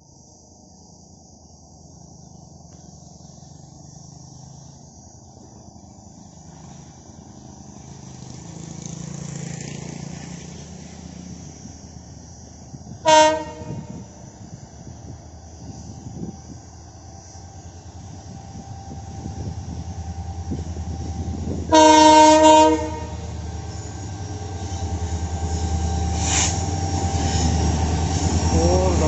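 EMD WDP-4B diesel locomotive approaching at the head of a passenger train, its engine drone growing steadily louder. It sounds its multi-tone horn twice: a short blast about halfway through and a longer blast of about a second later on.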